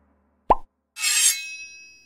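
Logo-animation sound effects: a short rising pop about half a second in, then a bright sparkling shimmer with a few ringing chime tones that fade away.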